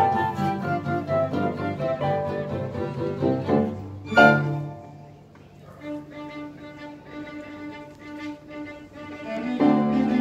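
A student string orchestra with classical guitar plays, with violins, cellos and double basses bowing. A full passage ends on an accented chord about four seconds in. Soft held bowed notes follow, and the full ensemble comes back in near the end.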